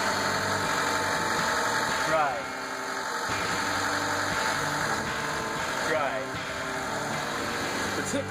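A 2000 Honda Civic's four-cylinder engine idling steadily after its fuel filter has been replaced and the fuel pump fuse refitted. The engine sounds a lot better.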